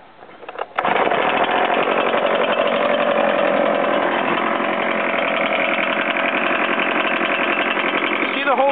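An Echo PB-770 backpack blower's 63 cc two-stroke engine comes in suddenly about a second in, then runs loud and steady.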